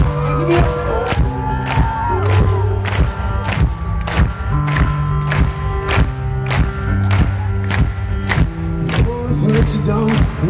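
A band playing live, heard from within the audience: a steady drum beat at about two hits a second under sustained bass and guitar notes.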